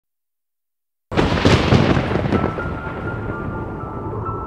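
Silence for about a second, then a sudden loud thunder-like boom with crackling hits that dies down into sustained music notes: the opening sound-design sting of a horror film trailer.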